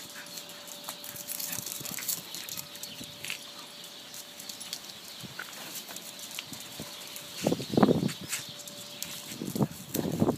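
Dogs at play, with one dog letting out a short, loud sound about three-quarters of the way in and a smaller one just before the end, over light crackling and ticking.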